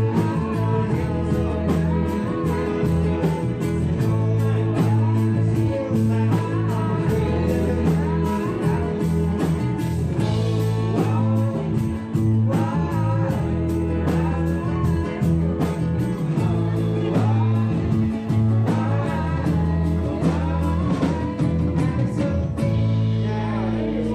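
Live band playing a song with lead vocals: electric keyboard, ukulele, bass and drums on a steady beat.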